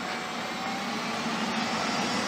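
Steady background engine noise, with no distinct events.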